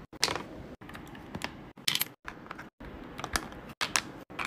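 Plastic keycaps clicking and clacking as they are handled and set into a clear plastic compartment tray: a handful of separate sharp clicks. The sound cuts out completely for a moment several times.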